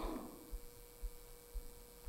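Quiet pause: room tone with a faint steady hum.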